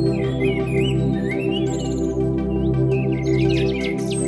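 Slow ambient synthesizer music from a Korg Wavestate, holding steady sustained chords, with songbirds chirping and warbling over it.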